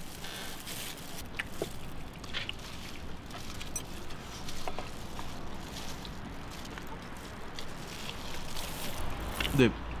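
Quiet eating at a table: faint scattered small clicks and rustles from boiled chicken being pulled apart with plastic-gloved hands and eaten with chopsticks. A voice starts near the end.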